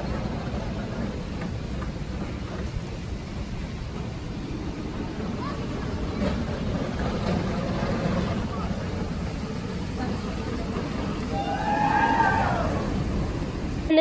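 Open-air amusement-park background: a steady low rumble with indistinct crowd voices. About twelve seconds in, one voice rises and falls more clearly.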